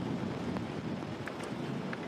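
Typhoon wind and heavy rain beating on an outdoor microphone: steady wind noise with a low rumble.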